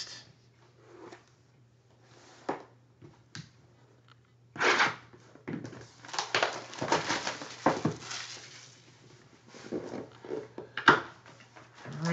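Plastic shrink-wrap being torn and crinkled off a sealed cardboard box of trading cards, with a sharp tear about four and a half seconds in and a stretch of crinkling after it. A sharp snap near the end as the box lid is lifted open.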